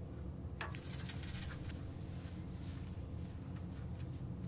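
A curved metal tool scraping and cutting moulding sand in a casting flask: a cluster of scratchy strokes in the first half, fainter ones after, over a steady low hum.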